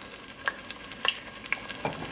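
Battered dandelion fritters deep-frying in hot canola oil at about 350°F: a steady sizzle full of rapid little crackles and pops.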